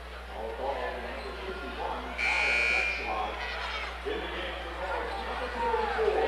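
Gymnasium scoreboard buzzer sounding once, a short steady blast of under a second about two seconds in, over the voices of people in the gym.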